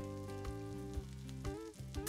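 Garlic, onion and shrimp paste sizzling as they sauté in a wok, under background music holding sustained chords.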